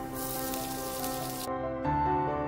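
Chopped onion hitting hot oil in a frying pan and sizzling for about a second and a half, then cutting off suddenly, over background music.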